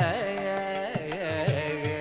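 Carnatic classical music: a male voice singing, swinging around the notes in quick ornaments and then holding them, over a steady drone, with percussion strokes in the second half.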